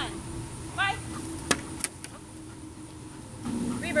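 A steady low motor hum that swells about three and a half seconds in, with two sharp clicks about a second and a half in, a third of a second apart.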